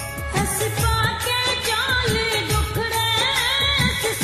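Punjabi sad song: a woman singing a wavering melody over a steady drum beat and accompaniment.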